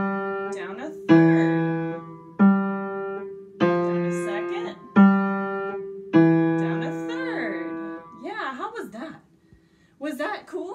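Upright acoustic piano played one note at a time in the left hand, stepping by seconds and thirds (melodic intervals): five single notes about a second apart, each struck and left to ring away. A woman's voice speaks softly over the last notes.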